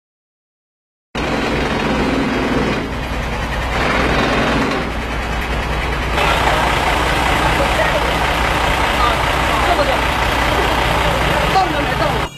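After about a second of silence, roadside noise: a motor vehicle's engine running steadily with a low hum, and people talking in the background.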